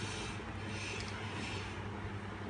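Faint rustling and handling of a partly reassembled iPhone as it is picked up, over a steady low hum.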